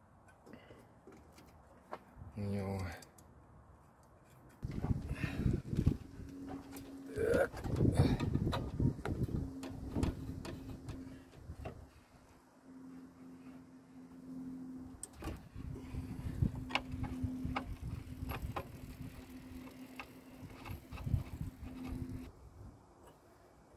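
Hand tools and metal parts knocking and clinking in irregular bursts during engine repair work. A faint steady hum runs underneath from about a third of the way in, and there are a few brief muttered sounds of voice.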